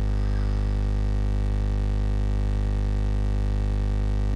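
Loud, steady electrical hum: a deep mains-frequency buzz with a stack of overtones, unchanging throughout.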